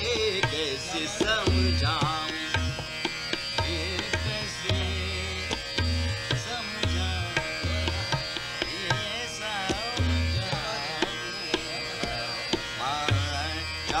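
Hindustani classical vocal performance: a male voice sings gliding, ornamented phrases over a steady drone, accompanied by tabla playing a steady cycle with sharp strokes and deep, resonant bass strokes.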